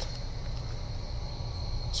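Turbocharged Lada Niva engine idling in the open engine bay: a steady low rumble with a thin steady high whine above it.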